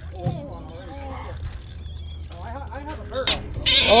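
Excited voices of several people calling out and exclaiming, rising in loudness near the end, over a steady low hum.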